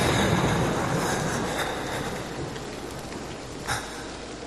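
A thunder-like burst of rumbling noise starts suddenly and dies away over about two seconds, over a steady hiss. A sharp click comes near the end.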